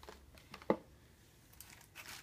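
Light handling noises from Easter-basket toys being picked through: faint rustling of plastic packaging and a few small clicks, with one sharper click a little under a second in.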